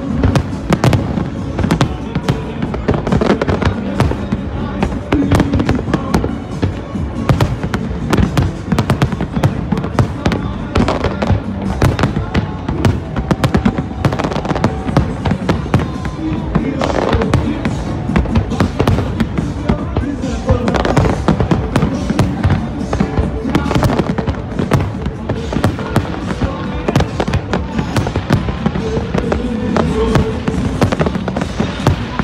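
Aerial fireworks display: shells bursting in a dense, continuous barrage of bangs and crackles, several a second, with music playing underneath.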